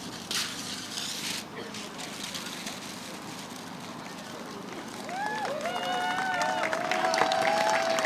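Christmas wrapping paper rustling and tearing as it is pulled off a giant cardboard check, a burst about a second long near the start. From about five seconds in, several voices exclaim and cheer, growing louder.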